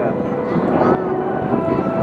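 Steady engine drone of a C-130 tanker's turboprops and the F/A-18 Hornets flying past in refuelling formation, with a few held tones in the hum.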